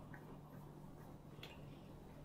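Near silence: quiet room tone with a low steady hum and a faint, brief click about one and a half seconds in.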